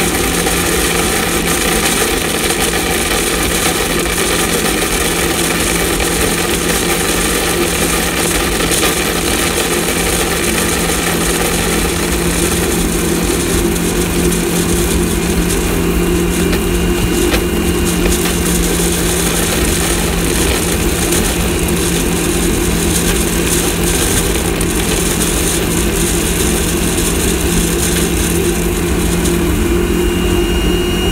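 Vacuum-driven wood pellet transfer system running: an old NSS commercial vacuum pulls air through the pipe and wood pellets rattle out into the hopper. Loud and steady, with a constant hum under the rush of air.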